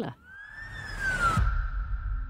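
Audio transition sting: a swelling whoosh with a siren-like tone that rises and then falls, ending about one and a half seconds in with a low boom, the tone ringing on.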